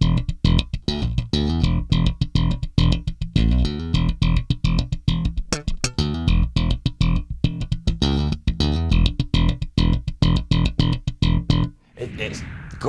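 Music Man Retro '70s StingRay electric bass played slap-style with a clean tone through a small Markbass 1x12 combo: a fast, busy line of thumb slaps and popped notes that stops just before the end.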